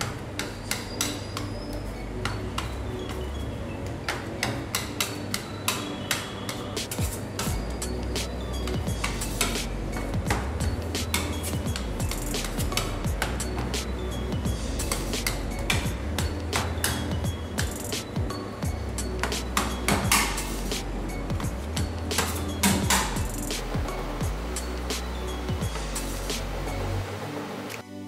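Background music with a repeating bass line, over frequent sharp knocks and clinks as a metal bench scraper cuts dough and dough balls are set down on the worktop.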